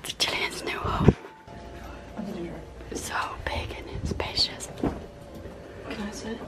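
Two people whispering and talking quietly, in short broken snatches.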